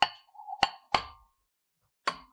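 Metal dish being set down into a heating mantle: three sharp clinks with brief ringing within the first second, and a short scrape between the first two.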